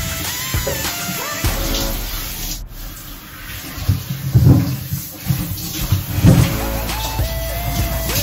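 Background music: a melody over a low pulsing beat, a little quieter for a couple of seconds in the middle.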